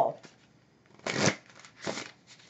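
A deck of tarot cards being shuffled by hand, two short bursts of cards riffling about a second in and near the end.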